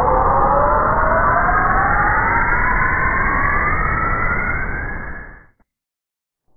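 Electronic rising sound effect (a riser): several tones climbing slowly together in pitch over a low rumble, building up and then fading away about five and a half seconds in.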